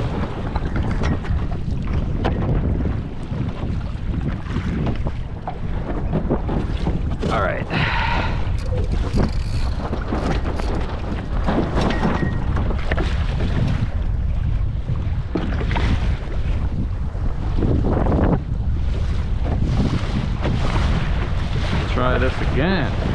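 Wind buffeting the microphone of a camera on a Laser dinghy under sail, over the steady rush and splashing of water along the hull.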